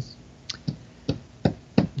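Five short, soft clicks or taps at irregular spacing, about a third to half a second apart.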